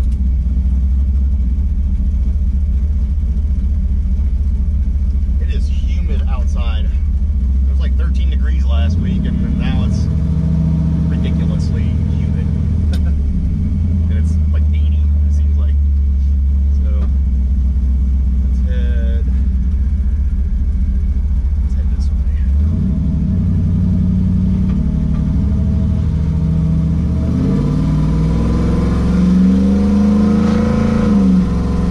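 Cammed 5.3 L V8 with a BTR Stage 4 truck cam and headers, heard from inside the cab while driving. The engine note steps in pitch about nine seconds in and again about 22 seconds in, then rises near the end as the truck accelerates.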